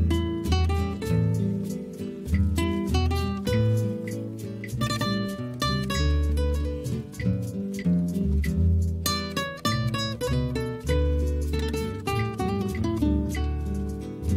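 Two acoustic guitars playing together without singing. Quick picked melody notes run over low bass notes and chords.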